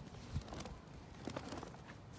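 Color guard flag and pole being swung in swirls: faint swishing with a few soft knocks and taps, the strongest a low thump about a third of a second in.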